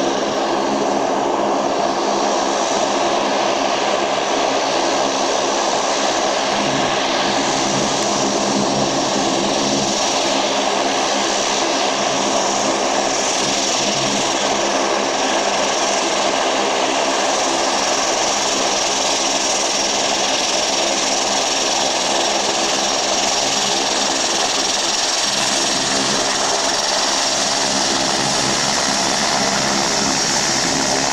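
Saab 340 turboprop airliner taxiing close by, both engines running steadily: an even propeller drone with a thin, high turbine whine above it.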